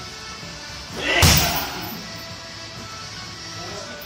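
A round kick striking a hanging heavy bag: one loud impact about a second in that dies away quickly, over steady background music.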